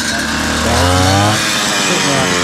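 Petrol brush cutter with a metal blade running as it cuts through grass and ferns. Its engine speed rises and falls as the throttle is worked.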